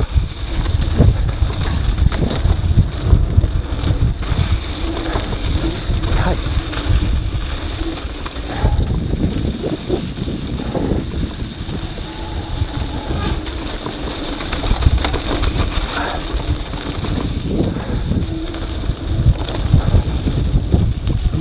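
Wind buffeting an action camera's microphone, mixed with mountain bike tyres rolling over a dusty dirt trail and the bike rattling, as it descends at about 12–15 mph.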